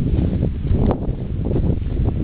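Wind buffeting the microphone: a loud, rough, uneven rumble, with a short click from camera handling about a second in.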